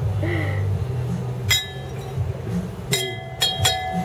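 Stemmed wine glasses clinking: one sharp clink about a second and a half in, then three quick clinks near the end, the last left ringing.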